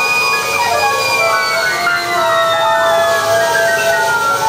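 Live jazz from a quartet of voice, keyboards, saxophone and drums. A long high note is held, then slowly glides downward in pitch, while short notes at shifting pitches move around it.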